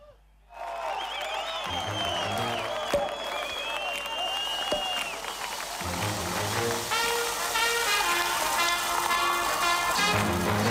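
A brief silence, then a studio audience bursts into applause and cheering as the opening music starts with a steady low beat; brass chords come in about seven seconds in.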